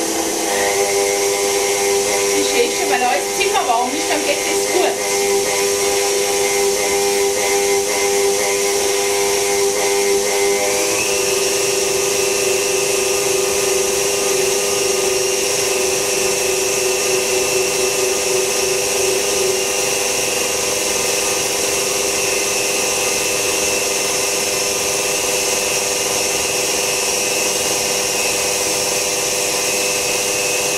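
KitchenAid stand mixer running steadily with a motor whine as it beats butter and sugar while eggs are added one by one. About a third of the way in, the whine shifts in pitch.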